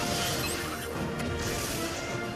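Instrumental TV theme music with drums and a steady beat, no voice over it.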